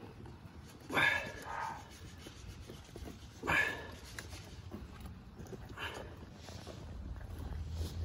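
Skeleton gun being squeezed three times, about two and a half seconds apart, pumping two-part chemical anchor resin from its cartridge into a drilled hole.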